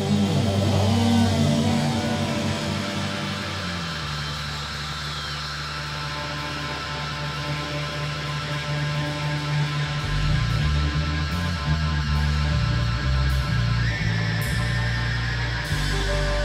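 Live rock band playing without vocals: amplified electric guitars and bass with drums. The music eases slightly for a few seconds, then a choppier bass rhythm comes in about ten seconds in.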